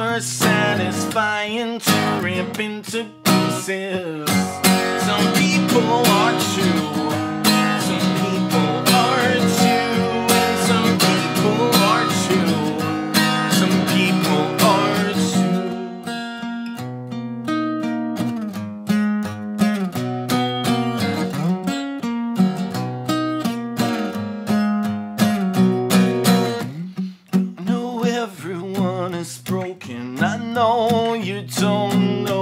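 Acoustic guitar strummed in an instrumental break between verses of a song. The strumming is dense at first, then thins to lighter, more spaced-out chords about halfway through, with a brief drop near the end.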